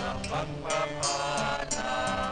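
Offertory hymn: a voice singing slowly over instrumental accompaniment, with low held notes that change step by step.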